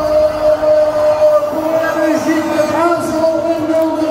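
Stadium crowd and public-address sound during the team line-up on the big screen: one long drawn-out note held at a steady pitch, stepping up slightly about one and a half seconds in.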